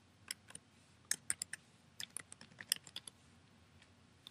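Computer keyboard keys typing a short word: a quick, irregular run of about fifteen faint keystrokes.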